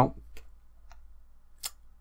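A spoken word trails off, then a quiet room with a steady low hum and a few faint clicks, the sharpest about one and a half seconds in.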